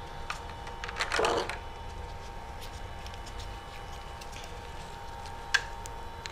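Quiet room with a steady faint hum, broken by a soft rustle of plastic tubing being handled about a second in, a few light clicks, and one sharper click near the end.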